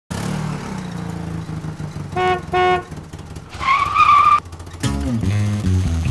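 Car sound effects: an engine running, two short honks of a car horn about two seconds in, a high squeal of tyres a little later, then an engine revving near the end.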